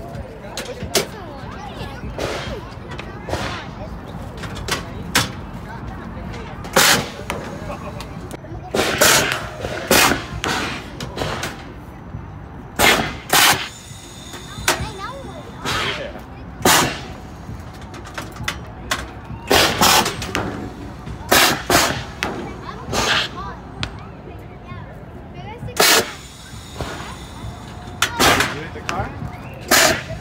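Mounted compressed-air cannons firing again and again: about twenty sharp pops at irregular gaps of one to two seconds.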